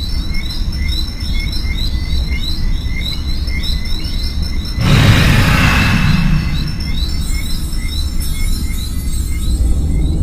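Repeated high chirping, about three chirps a second, over a steady low rumble. A rushing whoosh swells up about five seconds in and then fades.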